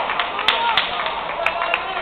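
Voices calling out in a large, echoing sports hall, with several short, sharp slaps or knocks scattered through.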